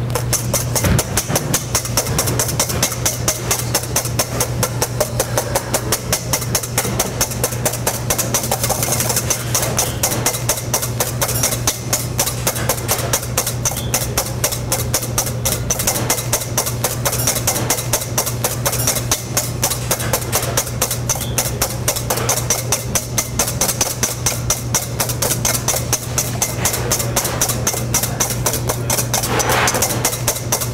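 Balloon whisk beating egg whites by hand in a stainless steel bowl: a fast, even run of clicking strokes against the metal, several a second, without a break. A steady low hum lies underneath.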